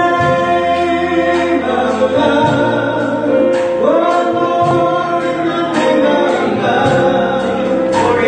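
Live gospel song: singing voices, led by a vocalist on a microphone, over a band with electric guitar and bass guitar, with long held notes.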